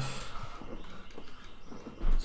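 Faber-Castell drawing pen sketching short strokes on paper, a faint irregular scratching.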